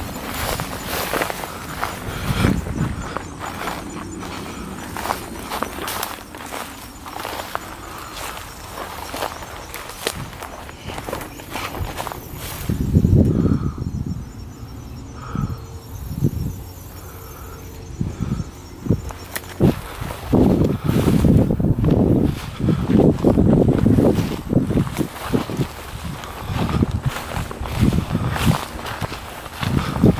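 Footsteps and rustling through tall dry grass and brush, with irregular scuffs and thuds. The steps are heaviest in a run about thirteen seconds in and again from about twenty seconds on.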